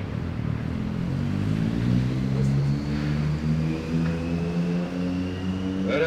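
A motor vehicle's engine running close by, its pitch rising over the first couple of seconds and then holding steady, with a faint high whine gliding slowly upward above it.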